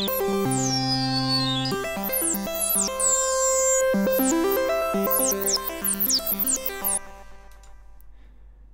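FXpansion Strobe2 virtual analogue synthesizer playing a freshly randomized patch: a run of notes with high tones sliding down in pitch. It dies away about seven seconds in.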